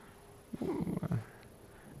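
A short, low murmured voice sound, a quiet rough "hmm" or mumbled word, starting about half a second in and lasting under a second, much softer than the lecture speech around it.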